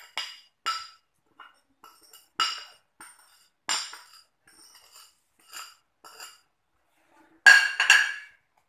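Porcelain bowl clinking against a stone mortar as salt is tapped out of it, a handful of separate sharp ringing clinks spaced a second or so apart, with a louder clatter near the end.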